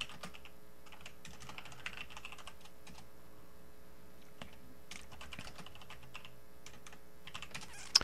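Computer keyboard typing: scattered faint keystrokes, with a sharper key click near the end, over a faint steady hum.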